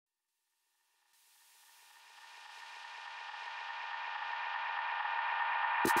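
Electronic music fading in out of silence: a sustained synth chord with a fast pulsing undertone, swelling steadily louder, then a sudden loud hit just before the end as the full track drops in.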